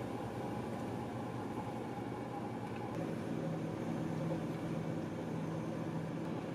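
Steady mechanical hum of a car's idling engine and ventilation fan heard inside the car's cabin, with a low steady drone joining about halfway through.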